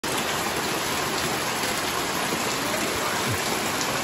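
Steady heavy rain, with roof runoff pouring from a pipe and splashing into a full plastic drum.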